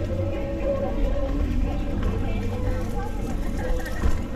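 Outdoor town-street background: a steady low rumble with faint music and voices mixed in.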